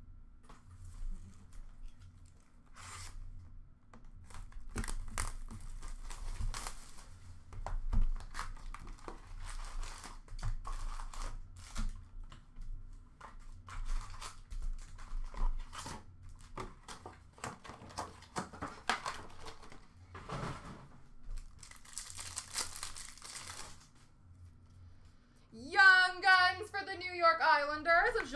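A hockey card box and its foil card packs being torn open by hand: crinkling and tearing wrapper with light clicks and taps of handling. A longer tearing rush comes near the end, just before a voice starts.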